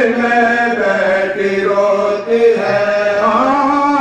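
A man chanting a marsiya, an Urdu elegy for the martyrs of Karbala, in long held melodic lines that bend up and down in pitch.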